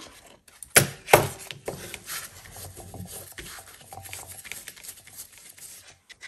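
Paper being handled on a tabletop: two sharp, short sounds about a second in, then soft, scattered rustling and rubbing of paper.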